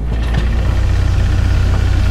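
A loud, steady, deep mechanical rumble, like an engine running.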